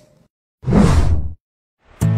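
One short whoosh sound effect for an on-screen transition, lasting under a second, about midway through.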